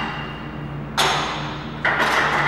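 Cable-machine weight stack clanking as the plates come down at the bottom of a cable crossover rep: a sharp metallic clank about a second in that rings briefly, then another loud knock just before the end.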